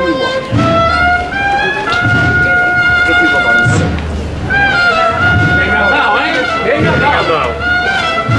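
Procession band playing a slow march: long held brass notes stepping up in pitch, with low drum beats underneath.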